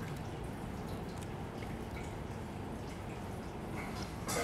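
Steady background hiss with a few faint small clicks from a film camera being handled in the hand.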